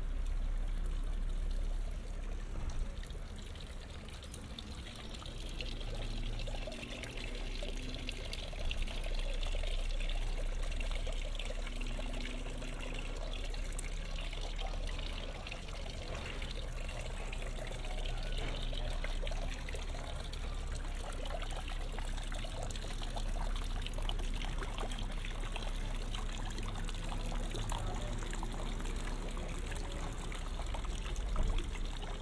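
Water pouring from the carved mask spouts of a stone wall fountain and splashing into its basin, a steady trickling.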